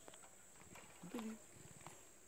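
A leopard feeding, faint: scattered crunching clicks, then a brief low growl about a second in.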